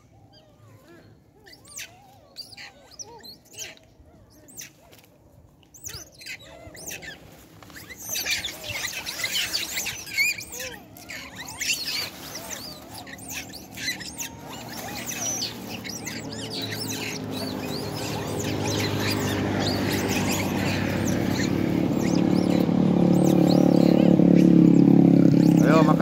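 A troop of long-tailed macaques squabbling over food, giving many short, shrill, high squeals and chatters that come thickest from about a third of the way in. In the second half a motor vehicle's engine approaches along the road, growing steadily louder until it is the loudest sound near the end.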